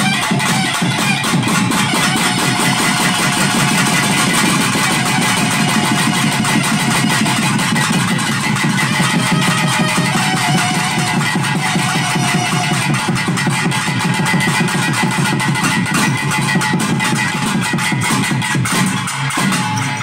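Loud, fast pambai drumming: a driving rhythm of stick strokes on the cylindrical folk drums, with a sustained melodic line over it.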